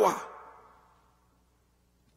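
A man's preaching voice trails off at the end of a phrase, fading out within the first second. Then comes a pause of near silence.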